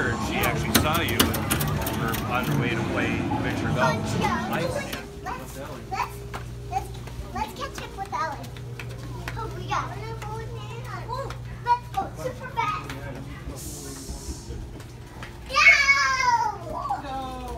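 Busy arcade noise of game machines and voices for about the first five seconds. Then quieter, over a steady low hum, with small children babbling and calling out, and a loud child's shout near the end.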